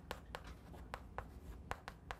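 Chalk writing on a chalkboard: a quick, irregular string of faint taps and short scratching strokes as the chalk meets the board.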